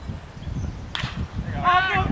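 A single sharp crack of a pitched baseball meeting bat or glove at home plate about a second in, followed near the end by people calling out.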